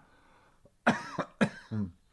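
A man coughing three times in quick succession, starting about a second in, after tea has gone down the wrong way.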